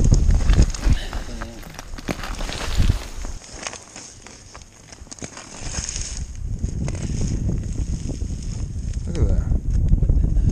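Wind rumbling on the camera microphone, mixed with rustling and handling noises and brief muffled voices.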